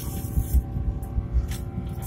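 Airbus A350 cabin noise during the takeoff roll: an uneven low rumble under steady engine tones, with a few brief rattles.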